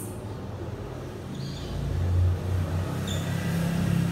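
Marker squeaking faintly on a whiteboard as words are written, over a low rumble that swells and is loudest about halfway through.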